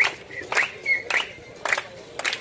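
Marchers clapping their hands together in a steady beat, about two claps a second, over a low hum of crowd voices.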